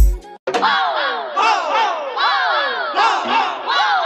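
Break in a DJ remix: the bass-heavy beat cuts out just after the start, and a sampled effect of many overlapping shouts falling in pitch repeats about four times a second.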